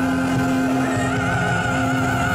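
A tenor voice holding a long, loud note with vibrato over live band accompaniment.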